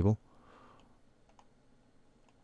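A few faint, sharp clicks of a computer mouse, spaced irregularly, in an otherwise quiet room.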